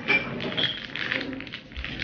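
Thin plastic packaging crinkling and crackling as it is handled, a quick irregular run of small crackles.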